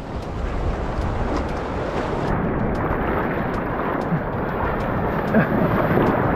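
Sea surf washing and splashing around an action camera held at the water's surface, with wind on the microphone: a steady rushing noise with scattered small clicks.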